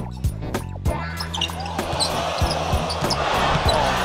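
A basketball dribbled on a hardwood court, bouncing several times, over background music with a steady low bass. A haze of arena crowd noise comes up about halfway through.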